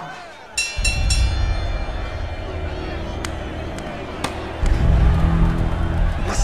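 A bell struck three times in quick succession, with a sharp clear ring, like a fight bell opening a bout. Dramatic score music with a heavy low beat follows and swells louder near the end.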